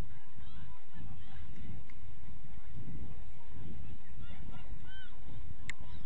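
Scattered short bird calls, each rising and falling, over a steady low rumble of outdoor noise on the microphone. A single sharp click comes near the end.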